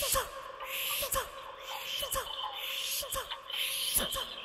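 Experimental vocal performance: a voice makes a string of short owl-like hoots that fall in pitch, about two a second, each with a light click, over a breathy hiss.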